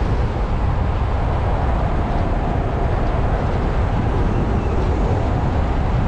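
Car driving along a road at speed: a steady, unbroken rumble of road and wind noise.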